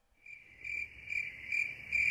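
A high-pitched steady trill that swells and fades about twice a second.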